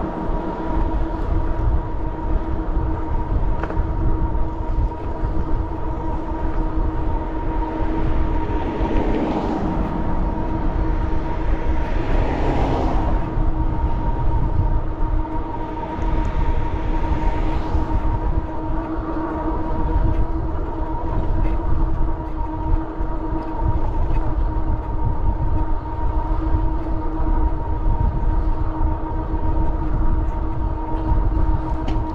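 Electric bike riding at a steady speed of about 17 mph: a steady motor whine over a low wind rumble on the microphone, with a couple of brief louder whooshes around the middle.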